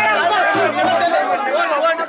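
Many men's voices talking and calling out over one another, a continuous crowd chatter.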